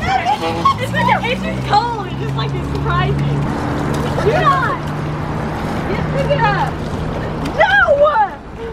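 Several girls' voices calling out and chattering, high-pitched and overlapping, over background music with long held low notes.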